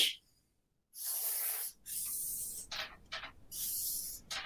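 Felt-tip marker drawing on flip-chart paper: a series of scratchy, hissing strokes, two longer ones followed by a few shorter ones, as the lines of a triangle are drawn.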